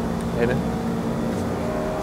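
Steady low mechanical hum with a few level tones, under a single spoken word.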